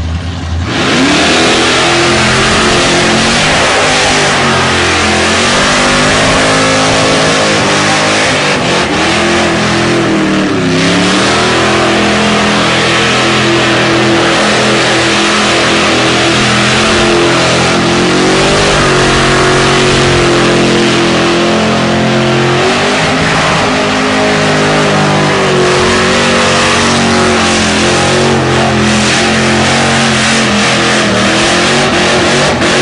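Supercharged Holden Monaro engine held at high revs through a burnout, coming up loud about a second in, with the revs wavering and dipping briefly about ten seconds in before climbing back, over the hiss of the spinning rear tyres.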